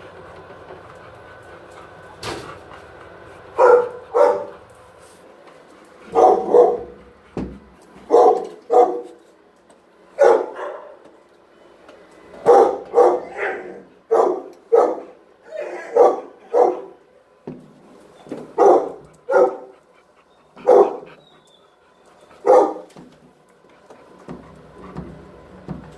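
A dog barking repeatedly, loud single barks often coming in pairs, starting a few seconds in, after a sharp knock.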